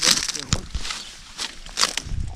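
Footsteps pushing through dense leafy undergrowth, leaves rustling and stems crackling in a run of short irregular bursts, with a few sharp snaps.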